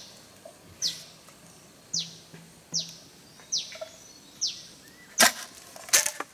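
A machete blade scraping down a standing green bamboo pole in quick strokes, about one a second, each a short falling swish. There is a single sharp knock a little after five seconds in.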